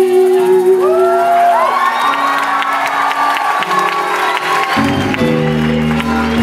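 A live band's song ends on held notes while the audience whoops and cheers, then applauds. About five seconds in, the guitars and bass start playing again.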